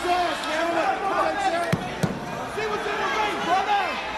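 Two sharp cracks close together, less than half a second apart, near the middle: a Singapore cane striking a wrestler's bare back. Yelling voices run under them.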